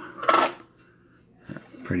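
A single metallic clink of a stainless steel tumbler being handled, about a third of a second in, followed by a faint click.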